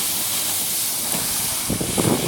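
Kayak hull sliding down a snow bank, a steady hiss of the hull running over the snow.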